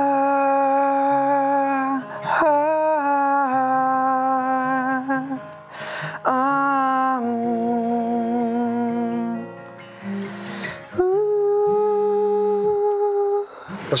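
A man humming a slow, wordless melody in long held notes, over an acoustic guitar, with short pauses between phrases: the introduction of an unfinished love song.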